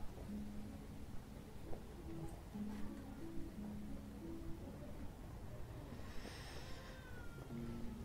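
Faint, slow background music: soft held low notes that change every second or so. About six seconds in, a brief higher sound glides downward.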